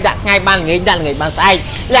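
Speech: a voice talking quickly, with a brief hiss about halfway through.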